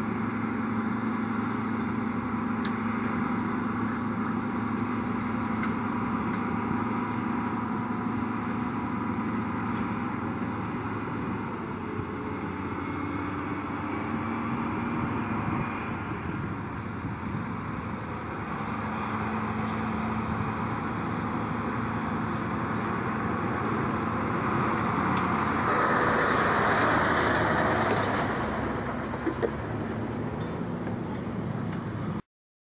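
Caterpillar D7R bulldozer's diesel engine running steadily under load as the dozer pushes dirt, a constant engine drone at a steady pitch. Near the end the noise swells into a louder rush for a couple of seconds.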